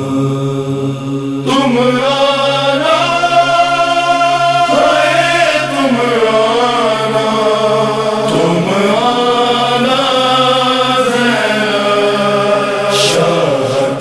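A noha, an Urdu lament, sung by a solo male reciter: the opening word "Shah" is drawn out in one long, wavering line over a steady low drone, with the voice entering about a second and a half in.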